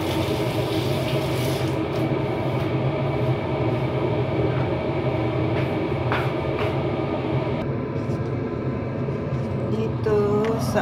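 Steady mechanical hum of a running fan or motor, with a few faint clicks over it.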